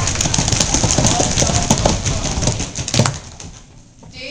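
Audience applauding, a dense patter of many hands clapping with a few voices mixed in; the applause dies away about three seconds in.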